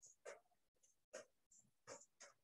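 Glue stick rubbed back and forth over paper: faint scratchy strokes, about three in two seconds.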